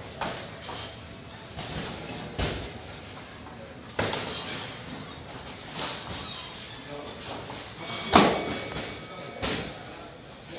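Blows landing in muay thai sparring: several sharp thuds of gloved punches and kicks hitting gloves, guards and body, about four of them, the loudest a little past the middle, over voices in a gym hall.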